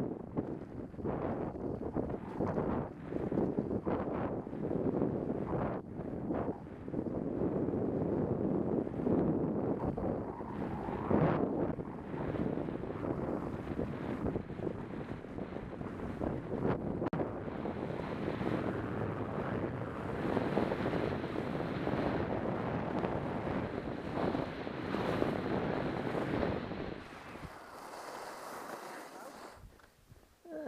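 Wind rushing and buffeting over an action camera's microphone while skiing downhill, mixed with the hiss of skis running on groomed snow. It fades away near the end as the skier slows to a stop.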